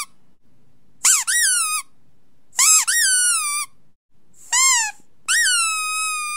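A series of high-pitched squeaks. There are four separate squeaks, each rising then dipping in pitch and lasting about half a second to a second. The last squeak, near the end, is longer and holds a steady note.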